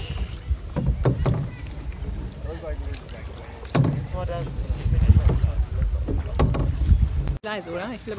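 Wind rumbling and buffeting on the microphone out on open water, with faint voices in the background; the rumble cuts off suddenly about a second before the end.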